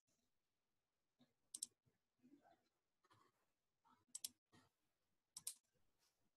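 Computer mouse clicks in quick pairs, three times, with near silence and faint soft sounds between them.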